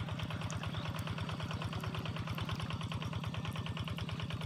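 A small engine running steadily at an even idle, with a fast regular putter.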